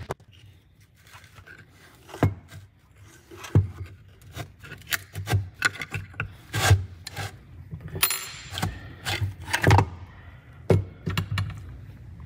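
Hand-tool work on a rusty steel car pedal box: a wrench scraping and clinking against bolts, with several sharp metal knocks and clatters as parts and loose bolts are handled. There is a brief stretch of scraping a little past the middle.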